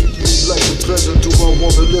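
Hip hop track: a heavy bass beat with sharp drum hits under a rapped vocal.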